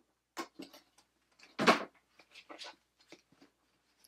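Packaging being handled as an envelope is lifted out of its gift box: scattered light rustles and small knocks, with one louder rustle about one and a half seconds in.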